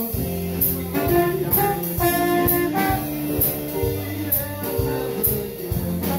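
Small live jazz band: saxophone, trumpet and trombone playing together over a drum kit, with steady cymbal strokes about once a second.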